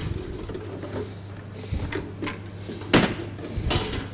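A few short knocks and clatters of hard objects being handled on a stainless steel kitchen counter, the loudest about three seconds in, over a steady low hum of kitchen equipment.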